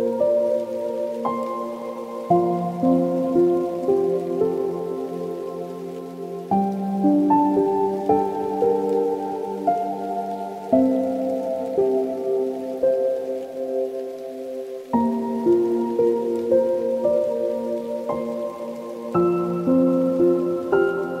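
Slow, soft solo piano music: sustained chords ring and fade, with a new chord struck about every four seconds.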